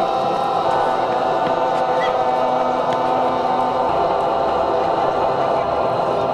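A group of voices singing together in chorus, holding long steady notes.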